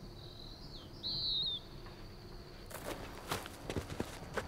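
A bird's short warbling chirp, about a second and a half long, near the start. It is followed by a few soft rustles and clicks.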